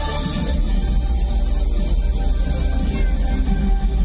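Loud music with a deep bass under a steady hiss from stage CO2 jets blasting columns of white gas. The hiss stops near the end.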